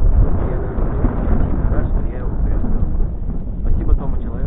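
Wind buffeting the microphone: a heavy, steady low rumble, with faint indistinct talk in the background.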